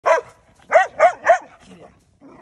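Belgian Malinois barking at a broom: one bark, then after a short pause three barks in quick succession, followed by a softer, lower sound near the end.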